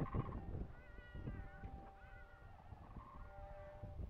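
Layered soundscape of wavering, animal-like calls over a low rumble, with a couple of held steady tones, fading down in the first second.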